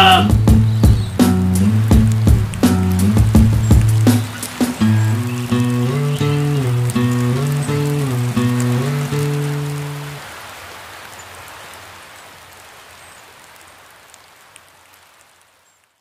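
Instrumental ending of a song: low held notes with sharp percussive hits until about four seconds in, then a slower stepping line of held low notes that stops about ten seconds in. A hissing tail then fades out to silence near the end.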